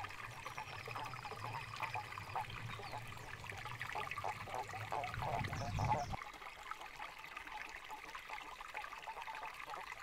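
Water trickling in a shallow stream, with a low rumble underneath that swells and cuts off suddenly about six seconds in.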